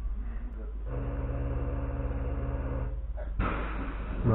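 A steady low electrical hum with overtones from a standing electric multiple unit's onboard equipment. It starts about a second in and cuts off abruptly after about two seconds, over a continuous low rumble.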